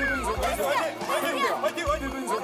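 Several excited voices talking and shouting over one another, with background music underneath.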